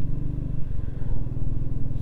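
Motorcycle engine running steadily at cruising speed, a constant low hum with a haze of wind and road noise over it.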